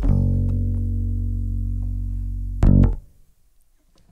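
A band's closing chord on guitars and bass, held and slowly fading for about two and a half seconds, then one short, loud final stab played together, after which the music stops abruptly.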